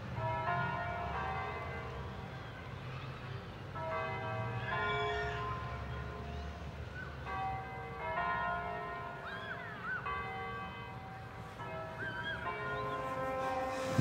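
Church bells ringing: a cluster of bells struck together about every three to four seconds, each ringing on until the next, over a low steady hum with a few faint chirping glides between the strikes.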